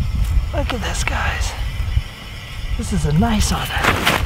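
Steady low wind rumble on the microphone on open ice, with a man's short wordless vocal sounds and a few light clicks near the end as a caught fish is handled.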